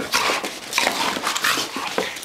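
Two pit bull puppies play-fighting: a quick, irregular string of noisy snarls and scuffles. It sounds rough but is play, not a real fight.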